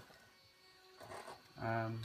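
Low room background with a faint brief sound about a second in, then a man's drawn-out, steady-pitched 'um' near the end.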